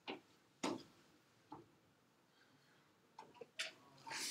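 Near silence broken by a few soft, sharp clicks: one right at the start, another about two-thirds of a second later, a faint one after that, and a few small ticks near the end. They are stylus taps on an iPad screen.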